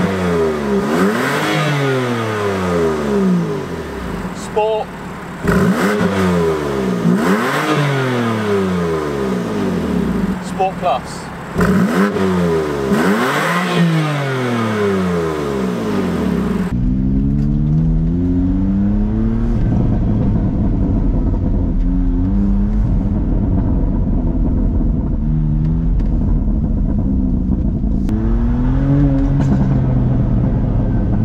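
BMW M2 Competition's twin-turbo straight-six, through an aftermarket PCW exhaust with its valves coded shut and the burbles off, revved three times at standstill, each rev climbing and falling back. About seventeen seconds in, the sound changes to the same car under way with valves open, the engine running lower and steadier with a few brief rises in pitch.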